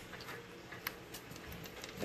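Quiet room tone with a few faint, short clicks and taps from handling.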